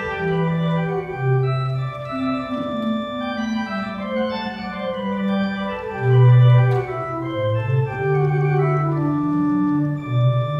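Pipe organ playing a slow classical piece: held chords over a moving bass line, with a louder low bass note about six seconds in.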